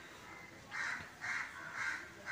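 Crow cawing outside, three short caws about half a second apart, beginning a little under a second in.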